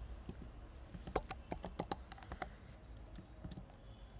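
Computer keyboard keystrokes: a quick run of about ten taps in under two seconds, then a few fainter taps near the end.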